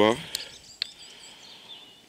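Two short clicks about half a second apart as the push button on a wireless LED trailer light is pressed once, with faint bird chirps in the background.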